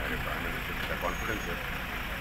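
Steady outdoor background noise, a low rumble with hiss, and faint voices briefly about a second in.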